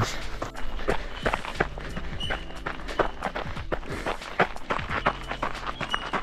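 Footsteps of a runner working up a steep dirt trail, about two to three steps a second, over steady background music.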